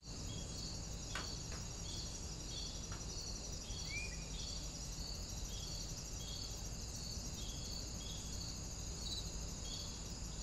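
Outdoor daytime ambience: insects chirping in a steady repeating pattern over a high continuous insect buzz and a low background rumble, with a single short bird call about four seconds in.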